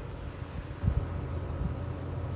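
A low, steady background rumble with a soft low swell just under a second in.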